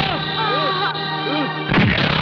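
Dramatic film background music with sliding, arching tones, broken near the end by a single loud bang-like impact.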